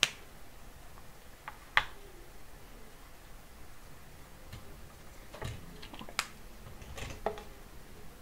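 A dry-erase marker on a small whiteboard: a sharp click as it is uncapped, then faint short strokes of the pen writing, and a few more clicks of the marker and board.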